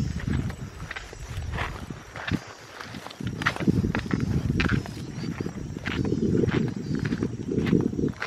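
Footsteps through grass at a walking pace, about one and a half steps a second, under a heavy rumble of wind buffeting the microphone that gets stronger about halfway through.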